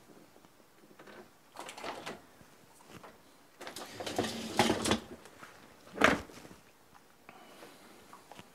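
Kitchen drawers and cupboards being opened, rummaged through and shut, in a few separate bouts of rattling, with a sharp knock about six seconds in as the loudest sound.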